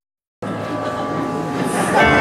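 The audio cuts out completely for a moment at the start. Live worship band music then resumes, with held chords from keyboard and bass guitar in a reverberant hall.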